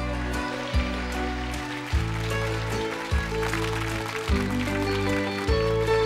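Live country band playing a song's instrumental introduction: held chords with a bass note struck about every second and a quarter.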